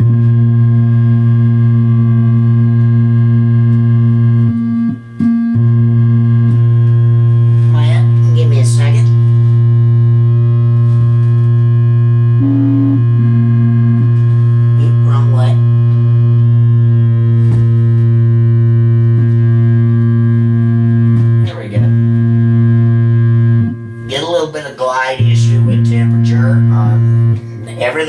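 Home-built analog synthesizer playing square-wave tones: a held low bass note with sustained higher chord notes above it, the bass dropping out briefly about five seconds in and a few times near the end.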